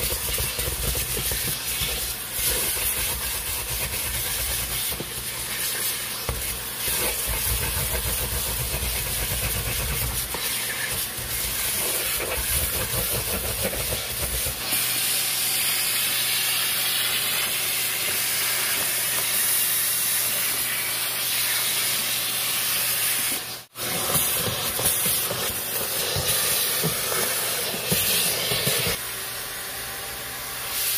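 McCulloch 1385 steam cleaner's wand hissing out steam in a continuous jet, with a low rumble underneath for the first half and one brief break a little over two-thirds through.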